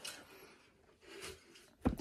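Quiet room with faint handling noise, then one sharp knock near the end, as a large insulated tumbler flask is picked up and knocks against something hard.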